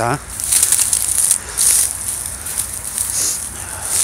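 Dry, dead reed stalks and grass rustling and crackling underfoot in irregular bursts, footsteps pushing down through the dry reeds.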